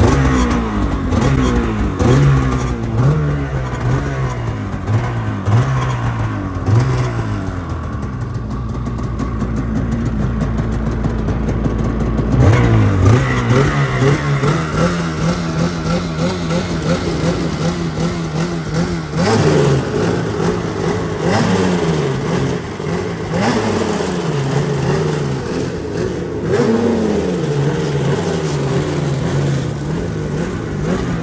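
Polaris 9R two-stroke snowmobile engine running on its first start after an engine swap. It is blipped about once a second at first, so the pitch rises and falls. It then holds a steady fast idle for several seconds in the middle, and is revved up and down again near the end.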